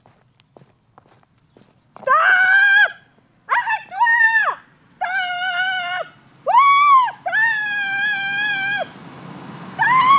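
A woman's loud, high-pitched wordless cries, five long calls that swoop up at the start and fall away at the end, the last held longest. They are shouts to hail an approaching car. Faint footsteps on gravel come before them.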